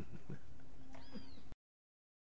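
Faint steady hiss of the recording's noise floor after the accordion music has stopped, with one faint brief high gliding squeak about a second in; the sound cuts off abruptly to total silence about one and a half seconds in.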